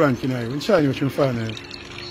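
A man speaking, with a faint steady tone underneath.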